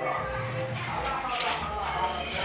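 Indistinct voices speaking, not clear enough to make out words.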